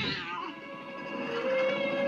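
Cartoon cat yowling: one long, steady held cry starting about halfway through, over background music, heard through a TV speaker.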